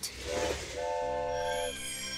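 Cartoon sound effect of a small train dashing off: a short rushing whoosh, then a brief toot and a longer horn blast of about a second, over soft background music.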